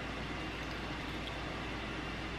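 Steady low hiss of room tone, with no distinct sound standing out.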